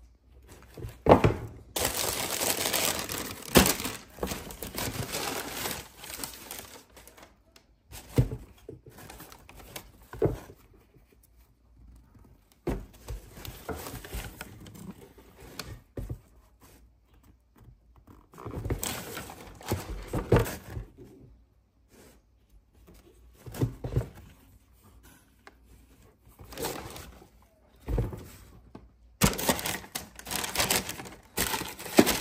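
Tissue paper and a cardboard shoe box rustling and crinkling as a sneaker is handled in the box, in irregular bursts with soft knocks and short pauses between them.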